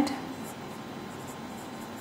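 Marker pen writing on a whiteboard: faint short scratches of the pen strokes over a steady room hiss.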